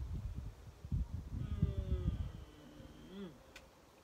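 Wind buffeting the microphone in low rumbling gusts for the first two and a half seconds, overlapped by a long hummed voice tone that ends with a short rise and fall, followed by a single sharp click.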